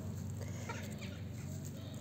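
Domestic hens clucking faintly in the background.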